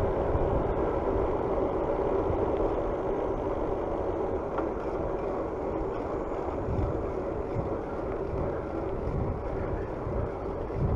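Bicycle rolling along a paved road: steady tyre and wind noise, with a few low gusts on the microphone.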